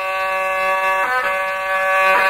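A bowed fiddle plays long, steady held notes in an ataba folk song, stepping to a new note about a second in.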